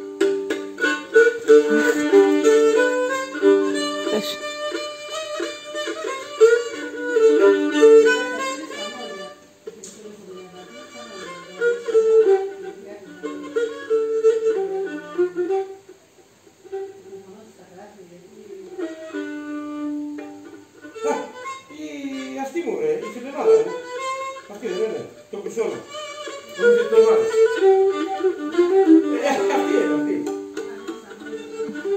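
Cretan lyra bowed solo: a lively, ornamented melody over a steady lower note, dropping quieter around the middle and growing fuller again near the end.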